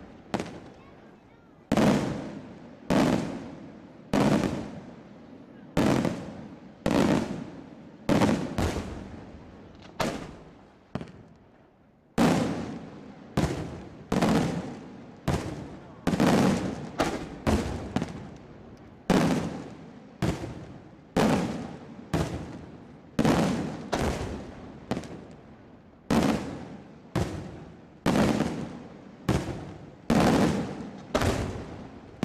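Daytime fireworks display: a steady run of aerial shells bursting overhead, about one loud bang a second, sometimes two in quick succession, each followed by an echoing tail.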